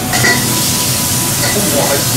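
Loud, steady hiss of oil frying, starting and stopping abruptly.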